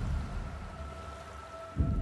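Trailer sound design: a low rumble under a steady high held note, with a deep boom at the start and a louder one near the end.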